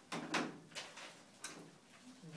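Raffle tickets being rummaged in a bag: a few short rustles, the loudest just after the start, then a sharp click around the middle.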